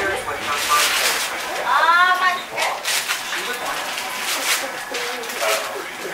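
Wrapping paper being torn and rustled off a large present in quick ripping strokes, with a child's high voice calling out about two seconds in.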